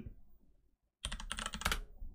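Computer keyboard being typed on: a quick run of keystrokes starts about a second in, as a short folder name is typed into a dialog box.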